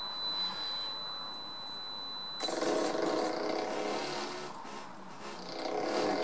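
An electric motor starts about two and a half seconds in and spins up a 9 kg flywheel coupled to a generator made from a 0.75 kW water pump motor, then runs with a steady hum. Before it starts there is a thin, high steady tone that stops as the motor starts.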